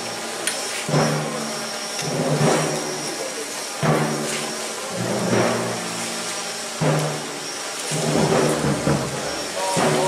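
Religious procession crowd: voices with music in repeated phrases, a new phrase starting every second or two.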